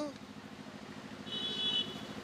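A motor running steadily in the background, a low pulsing drone, with a brief high-pitched tone over it a little past halfway.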